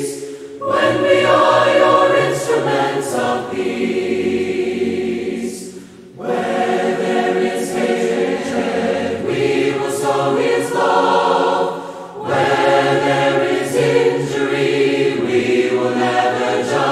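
Mixed choir singing a hymn a cappella in four-part harmony, in phrases with short pauses between them.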